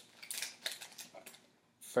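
Foil trading-card pack crinkling and rustling in the hands as a card is slid out of it, dying away about three-quarters of the way through.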